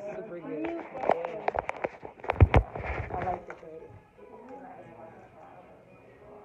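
Knocks and rubbing of a phone being handled close to the microphone and set in place, with a muffled voice early on. The loudest knock comes about two and a half seconds in. After about four seconds it drops to faint background music.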